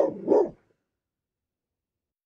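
A dog barks twice in quick succession, the barks about a third of a second apart.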